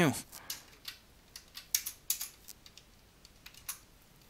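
Computer keyboard being typed on, sharp key clicks in short irregular runs with gaps between them.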